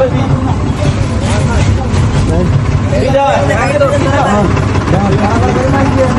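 Low, steady rumble of a running motor vehicle, with people talking over it.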